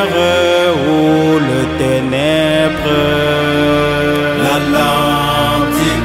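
A French Christian song: a voice holds long sung notes over a steady musical backing, sliding down in pitch and back up twice.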